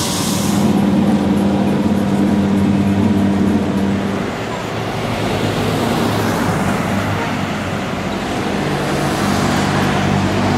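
A motor vehicle engine running amid street traffic. A steady low hum eases off about four seconds in and comes back toward the end.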